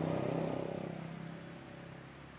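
A motor vehicle's engine running with a steady low hum, loud at first and fading away from about half a second in.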